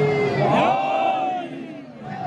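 A large crowd of many voices calling out at once, with a few long held calls rising above the mass. The voices thin out and grow quieter near the end.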